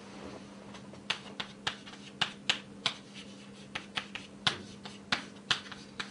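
Chalk writing on a blackboard: about a dozen sharp, irregularly spaced taps as the chalk strikes the board with each stroke, starting about a second in.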